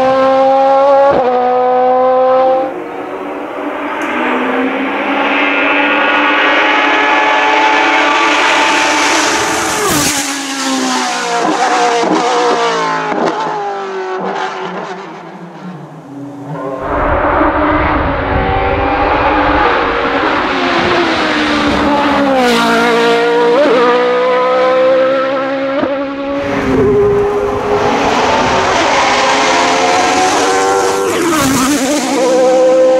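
Hill climb race car engines at full throttle, each rising in pitch and dropping back at the gear changes as the cars climb the course. One engine gives way to another about three seconds in, that one fades, and a deeper, louder engine comes in about halfway through and revs up through the gears as it approaches.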